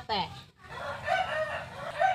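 A rooster crowing, one long pitched call, after a brief word of a woman's speech at the start.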